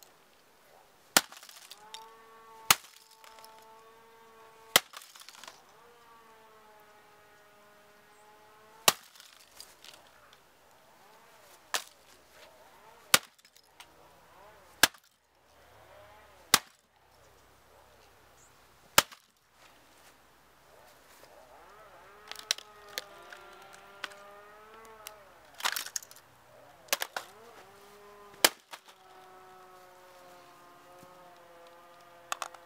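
Repeated sharp blows smashing a late-1990s Toshiba Satellite 4300 laptop, its plastic case and keyboard cracking and breaking. About fifteen hits land a second to several seconds apart, coming closer together near the end.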